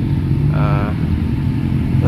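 Motorcycle engine running steadily at low revs, an even low hum, with a short burst of a voice about half a second in.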